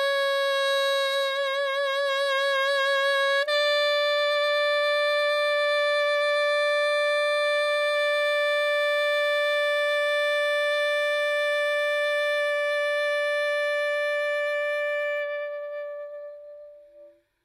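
Yanagisawa A-WO37 alto saxophone played unaccompanied: a note with vibrato, then about three and a half seconds in a step up to a slightly higher note held long and straight, fading out near the end as the tune closes.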